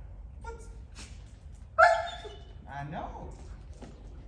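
German Shepherd giving one loud, sharp bark about two seconds in, then a shorter pitched sound that falls in pitch a second later.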